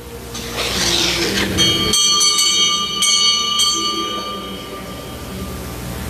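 A small altar bell rung at the elevation of the chalice after the consecration: several quick strikes about two seconds in, with the ringing dying away over the next few seconds.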